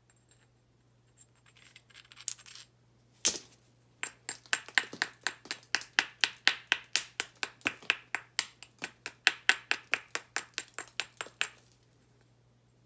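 A hammerstone tapping the edge of an Onondaga chert spall in quick, light stone-on-stone strikes, about four or five a second for nearly eight seconds, each with a short high ring. Before the run there is a brief scrape and one single harder strike.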